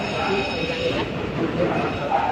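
Steady workshop din: a continuous rumbling noise with a faint high-pitched whine, with people talking in the background.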